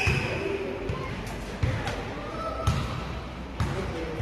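Indistinct background voices in a fast-food restaurant, with dull low thumps about once a second.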